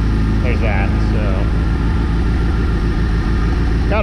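1985 Nissan 720's Z24 four-cylinder engine running just after starting, its idle uneven with irregular beats: a misfire.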